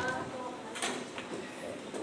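Faint, brief murmured speech in a quiet room, with a couple of light clicks or knocks around the middle.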